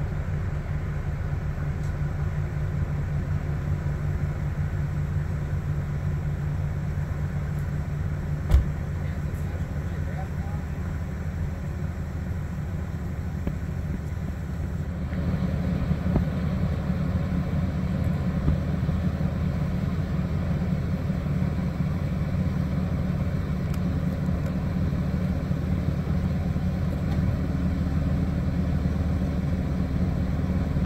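Steady low engine drone from a small cruise ship moving slowly along the creek close by. A single knock comes about a third of the way in, and the drone grows a little louder and fuller just past halfway.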